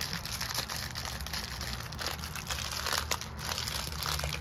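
Tea packaging crinkling and rustling in uneven bursts as someone handles it, trying to open a tea box and its wrapped tea bag with one hand.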